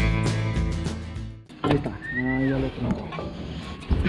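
Country-style guitar music that cuts off abruptly about a third of the way in, followed by a click and a short shouted call.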